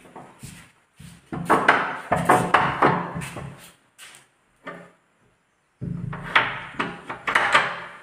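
Screwdriver and a metal barrel bolt clicking and knocking against a wooden door as the bolt is screwed on: a string of sharp clicks and knocks that breaks off briefly past the middle, then starts again.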